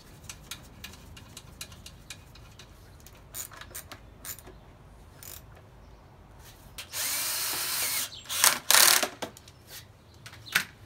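Cordless drill driving a screw into the Razor E200's metal deck plate: one steady run of about a second near seven seconds in, then two short bursts. Before that, light clicks of screws and parts being handled.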